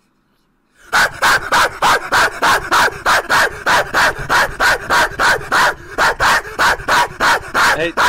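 A man barking like a dog into a headset microphone: a fast, very loud run of short barks, about three a second, starting about a second in.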